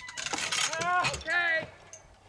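Two short, high-pitched cries of alarm from a person, each rising then falling in pitch, after a brief clatter. It is the reaction as a support wire of the hanging model spaceship comes loose and the model drops.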